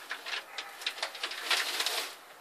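Newspaper crackling and rustling in quick, irregular crinkles as a pair of mating northern blue-tongued skinks shift about on it, thickest in the second half.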